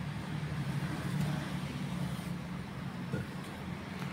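Steady background noise from the recording: a low hum with an even hiss over it, and no distinct event.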